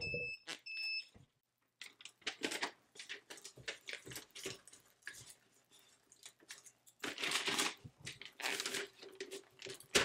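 Two short electronic beeps from a tumbler heat press's control buttons in the first second. Then paper crinkles and rustles in bursts while the tumbler, cradled in butcher paper, is handled and rotated in the press, busiest near the end.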